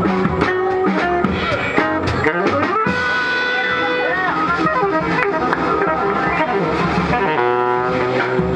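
Live small-group jazz: saxophone and trumpet playing over double bass and drums, with a quick run of repeated notes near the end.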